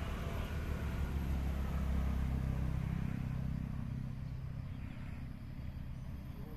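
A steady low rumble that swells about one to three seconds in and then eases off slightly.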